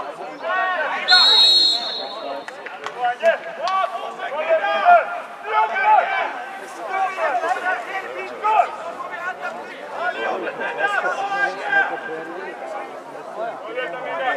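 Voices calling out across a football pitch, players and onlookers shouting in short bursts, with a short, high, wavering whistle blast about a second in that is the loudest sound.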